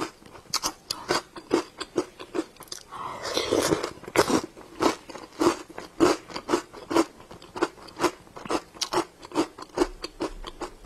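Close-up crunchy chewing of a mouthful of icy white dessert balls, the crunches coming about twice a second, with a longer grinding crunch about three seconds in.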